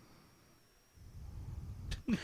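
Quiet room tone in a pause between voices, with a faint, steady high whine in the first half and faint low rumbling from about halfway.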